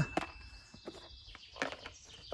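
The tail of a chime sound effect: one steady high tone fading out about two-thirds in. Under it, a few light clicks from a plastic cache container being handled.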